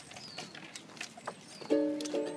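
Ukulele being strummed. A second or so of a few faint clicks comes first, then a chord rings out near the end and is strummed again.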